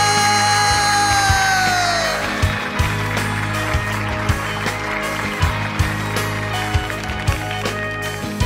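A male singer holds a long sung note that falls away about two seconds in, and a luk thung band carries on with an instrumental passage over a steady drum beat, about two strokes a second.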